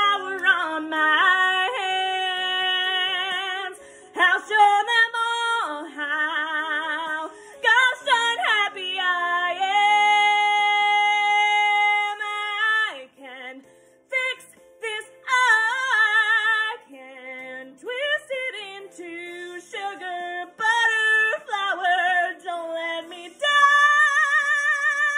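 A woman singing solo with a wide vibrato over quiet instrumental accompaniment, holding one long note in the middle.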